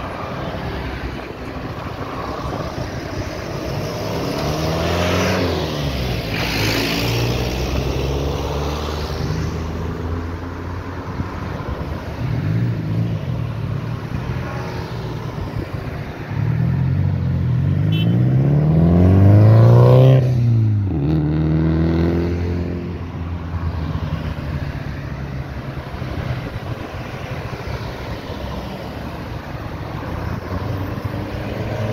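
Car traffic driving past close by, one vehicle after another, with engine and tyre noise swelling and fading. The two loudest pass-bys come about five and about twenty seconds in; the pitch drops as each goes by.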